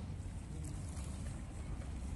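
A steady low rumble, even throughout, with no distinct events.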